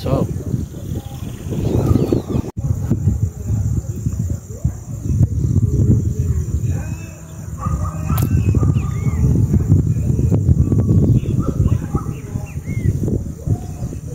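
Wind buffeting the microphone in a gusting rumble, with faint, distant voices shouting and calling. A single sharp click comes about eight seconds in.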